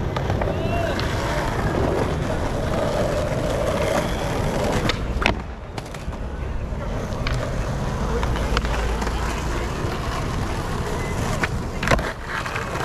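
Skateboard wheels rolling on rough asphalt, a continuous rumble, with sharp clacks of boards hitting the ground: one loud clack about five seconds in and another near the end.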